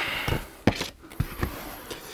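Cardboard packaging being handled: a brief rustle, then a few light, scattered knocks and taps.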